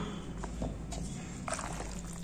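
Wooden spoon stirring a tuna and macaroni salad dressed with sour cream and mayonnaise: quiet sounds of the thick mixture being turned, with a couple of faint ticks about one and one and a half seconds in.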